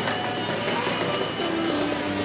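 Steady street background noise, with a faint high steady tone through most of it.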